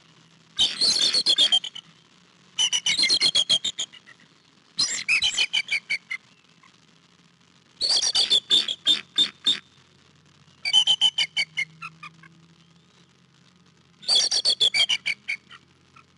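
Bald eagle chattering call, given six times: each a quick run of high, piping notes lasting about a second, with pauses of a couple of seconds between runs.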